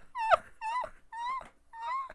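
A man's high-pitched, stifled laughter behind his hand: a string of short squeals, each rising and falling, about two a second.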